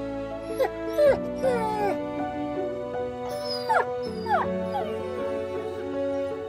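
A puppy whimpering: a few short, falling whines in the first two seconds and two more near the middle, over soft background music.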